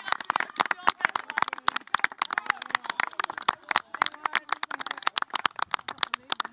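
Scattered hand-clapping from a few spectators, many irregular sharp claps a second, mixed with voices calling out as a youth football team celebrates a goal.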